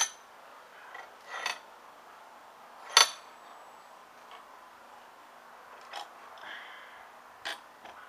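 Clicks and knocks from handling a Lee Load-All II shotshell reloading press mounted on a wooden board in a bench vise, as the board and press are worked loose and turned upright. A handful of sharp clicks and clinks come a second or two apart, the loudest about three seconds in.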